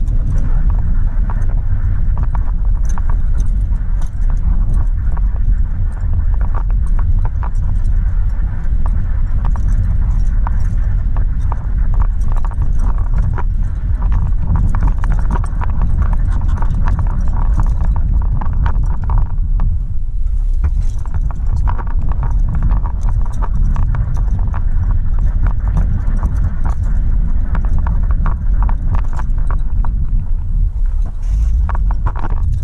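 Steady road and engine noise inside a moving car, a low rumble with many small clicks and knocks running through it.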